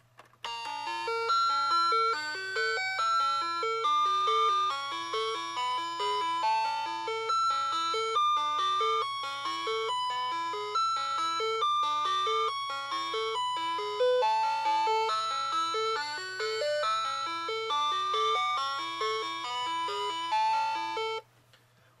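Megcos plastic musical toy telephone's sound box playing an electronic tune of short notes, set off by pressing its number nine key, over a faint low hum. The tune starts about half a second in and stops about a second before the end.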